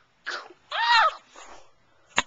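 A short breathy burst, then a loud high-pitched vocal exclamation whose pitch rises and falls, from a high voice, with a fainter trailing sound after it.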